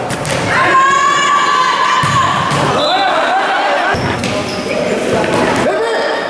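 A futsal ball being kicked and bouncing on a hard indoor court, with knocks that echo in a large hall. Voices shout over it, one of them in a long held call starting about half a second in.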